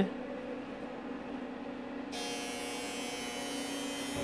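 Steady electrical mains hum with no clear knock from the lid. About halfway through, a high hiss comes in abruptly and carries on.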